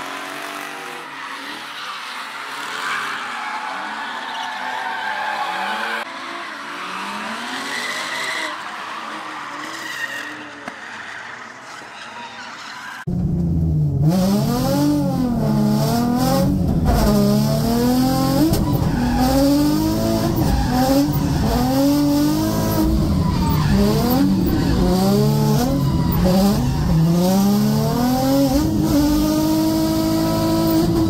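Drift car running hard, its engine revving up and down with tyres skidding. About 13 seconds in the sound jumps to much louder and closer, and the engine pitch rises and falls again and again as the throttle is worked through the drift.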